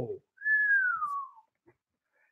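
A man's impressed whistle: one note sliding down in pitch, about a second long.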